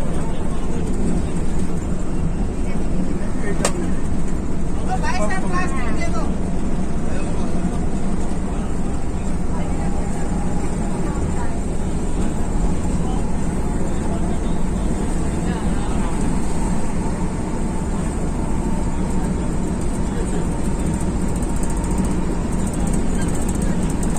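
Steady drone of a Volvo B11R coach's inline-six diesel engine and road noise, heard from inside the driver's cab at highway speed, with a single sharp click about four seconds in.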